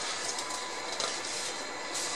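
Steady hissing background noise with a faint, thin high whine running through it.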